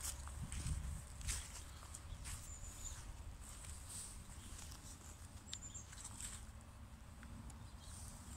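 Outdoor ambience with a steady low wind rumble on the microphone, scattered light crackles and footsteps over grass and twigs, and a few faint high chirps.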